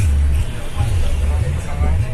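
Road and traffic noise heard on the move, with wind rumbling unevenly on the microphone.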